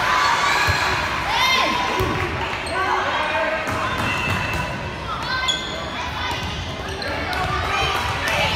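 Volleyball being struck and bouncing during a rally on a gym's hardwood court, the hits sounding as short knocks. Players and spectators call out throughout, echoing in the large hall.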